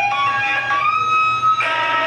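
Electric guitar playing a slow lead line of held notes, one note gliding up in pitch about halfway through and a new note coming in near the end.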